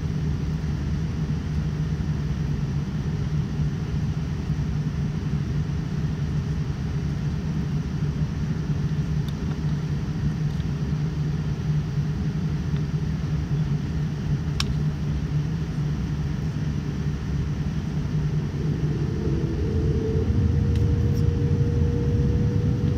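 Cabin noise of a Boeing 787-9 airliner taxiing: a steady low rumble and hum from the engines and the rolling airframe. A higher steady whine comes in and the noise grows a little louder near the end.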